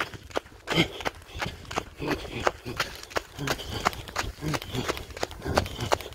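Running footsteps in sandals on a dirt road, a steady footfall about three times a second.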